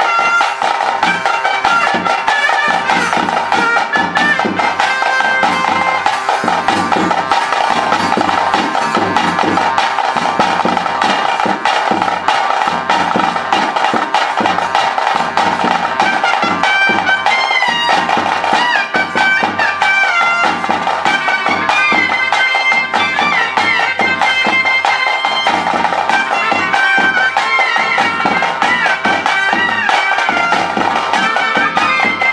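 Traditional daiva kola ritual music: a reed-like wind instrument plays a melody with sliding pitches over a steady drone. Drums beat an even rhythm beneath it.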